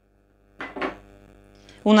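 Metal fork clinking against a ceramic plate, two quick clinks just over half a second in, with a faint ring after them.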